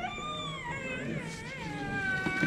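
A small child crying: one long high-pitched wail that wavers up and down in pitch, then settles into a steady held note near the end.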